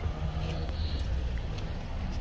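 Steady low vehicle rumble with a faint hum.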